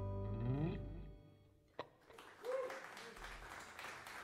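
A live band's final chord rings out and fades away over the first second, with a note sliding up in pitch as it dies. After a short lull and a single click, light audience applause starts, with a brief cheer.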